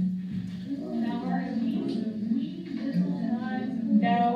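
Indistinct voices talking, played back from a classroom video over a room's speakers, too muffled for words to be made out.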